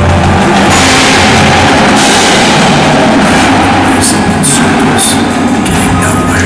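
Indoor percussion ensemble playing a loud passage: marching snare, tenor and bass drums together with the front ensemble's drum kit, mallet keyboards and cymbals. A sustained high wash of cymbal sound comes in under a second in and swells at about two seconds.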